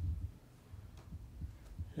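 A lull in a meeting room: low hum with a few soft, dull thuds, the loudest right at the start.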